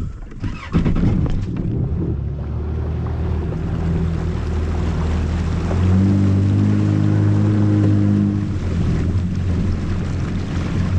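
Yamaha FX HO WaveRunner jet ski engine running under way, a steady low drone that picks up and gets louder about six seconds in, then eases back near the end, with water rushing past the hull.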